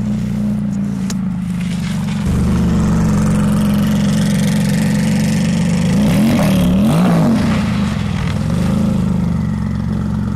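Twin-turbo flat-six engine of a Porsche 996 Turbo race car running steadily. It gets louder about two seconds in, then revs rise and fall a few times around six to seven seconds in as the car slides round on snow.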